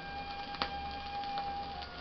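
Flute holding one long note from a 1929 shellac 78 rpm record, dropping to a lower note near the end. The disc's surface noise runs underneath, with a couple of sharp clicks and a low rumble.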